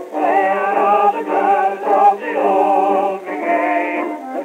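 Background music: an old-time song played from a thin-sounding vintage recording, its melody wavering with vibrato.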